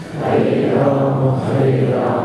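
A man chanting Sanskrit devotional invocation prayers into a microphone in a slow, drawn-out melody: a short breath pause at the start, then long held notes.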